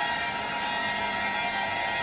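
Background violin music with sustained, held notes.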